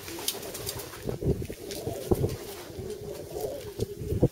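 Chinese Owl pigeons cooing low and steadily, with scattered soft bumps and clicks from handling.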